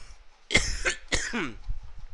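A person coughing twice, the two coughs about half a second apart.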